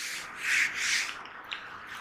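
A handheld duster wiping marker off a whiteboard: two quick rubbing strokes in the first second, then fainter rubbing.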